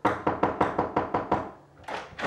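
Rapid knocking: about ten sharp knocks over a second and a half, then one more knock just before the end.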